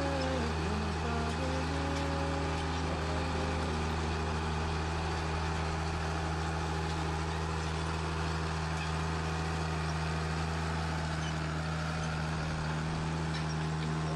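Heavy farm machinery's engine running steadily: a continuous low drone that holds the same pitch and level throughout.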